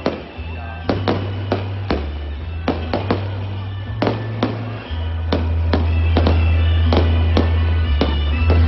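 Fireworks going off in a run of sharp bangs, about two or three a second, over loud music with a deep bass line that steps between notes and grows louder about halfway through.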